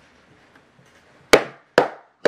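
Two sharp hand strikes about half a second apart, the first the louder, each with a short ringing tail, after a second of near quiet.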